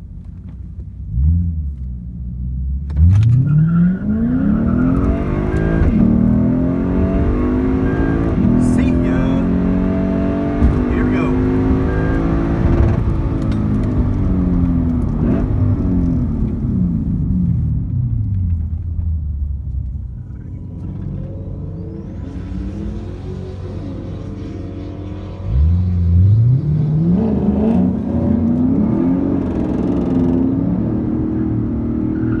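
Lexus IS F's V8 with an X-Force cat-back exhaust, heard from inside the cabin: a brief rev, then a full-throttle drag-strip launch about three seconds in, its pitch climbing through the gears, falling away as the car slows after the run. Near the end the engine accelerates hard again.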